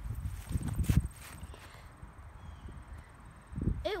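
Low thumps and knocks from a handheld phone being jostled as a stick is thrown, with one sharp loud knock about a second in, then quieter handling noise.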